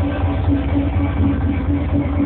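Techno played loud over a club sound system: a heavy, steady bass with a pulsing mid-pitched synth note repeating over it. The sound is muffled, with no high end.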